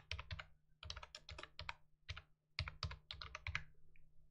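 Quiet computer-keyboard typing: a short file path keyed in several quick runs of keystrokes with brief pauses between them.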